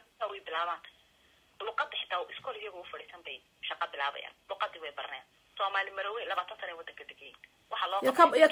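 Speech only: one person talking in short phrases with brief pauses, the voice thin and narrow as if heard over a telephone line.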